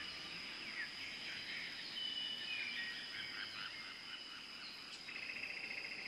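Outdoor bush ambience: birds calling in short downward chirps over a steady high insect drone. About a second before the end, a fast insect trill starts.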